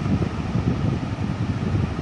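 Steady low rumbling background noise with no clear tone or rhythm, as loud as the speech around it.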